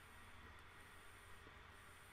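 Near silence: faint steady room tone and hiss.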